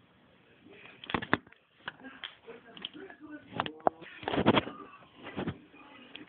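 Plastic Lego pieces clicking and knocking as minifigures and bricks are moved by hand, in irregular short taps, with a louder rustling burst just past the middle and a few brief vocal noises.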